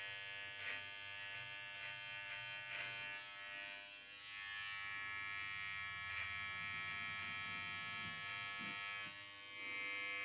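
Gillette Intimate cordless trimmer running with its 1 mm comb on, a steady electric buzz as it cuts goatee stubble along the sides of the jaw.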